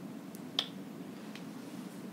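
A single sharp click a little over half a second in, with two fainter ticks either side of it, over a steady low hum.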